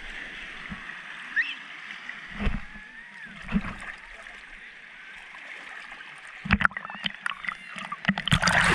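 Sea water lapping and splashing around a camera held at the water's surface, with a steady wash and short splashes about two and a half, three and a half and six and a half seconds in.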